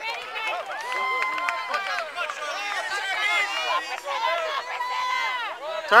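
Many high-pitched voices of children and sideline spectators calling and shouting over one another. The voices get louder right at the end.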